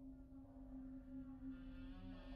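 A faint, steady low drone: one held tone with fainter overtones above it, no clicks or knocks.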